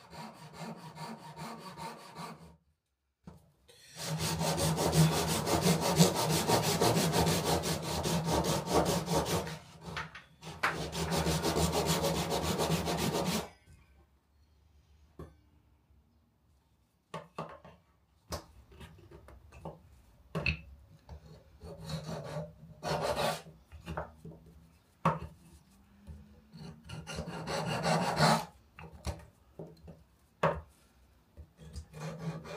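Handsaw cutting across a beech mallet-handle blank, sawing the tenon shoulders with fast, even strokes. The sawing is loudest in a long run from about four seconds in until about thirteen, with a short break partway. The second half holds quieter, scattered strokes of wood being cut or scraped.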